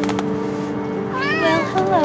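Siamese cat meowing once, a single call that rises and then falls, a little over a second in.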